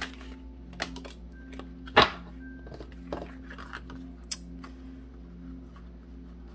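Tarot cards being handled and laid down on a table, with a few sharp taps, the loudest about two seconds in, over soft background music with long held notes.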